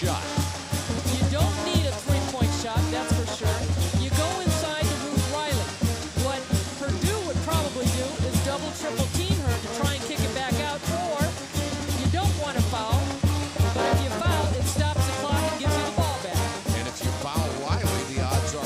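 Arena pep band playing a brass tune with trombones over a steady, driving drum beat, with crowd voices underneath.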